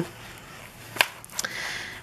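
Soft handling of a leather traveler's notebook as a notebook insert is slid under its first elastic string, with one sharp click about a second in and a fainter one shortly after.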